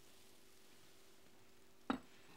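Near silence with a faint steady hum, broken near the end by a single sharp clink of a metal spoon against a porcelain bowl.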